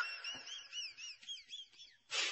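A quick series of short, high whistled chirps, each rising and falling in pitch, about five a second, stopping near the end.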